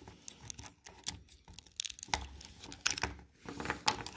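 Small plastic clicks and rattles of an MSIA BuCUE action figure being handled, its zip-tie-held wing being worked back into its joint, with a few irregular sharper ticks.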